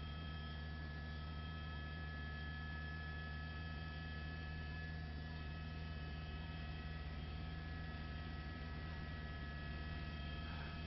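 Steady electrical hum with a faint hiss and a few thin, unchanging higher tones, with no change through the stretch.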